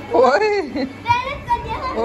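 Young children's high-pitched voices calling out in play, in two stretches, the second wavering and sing-song.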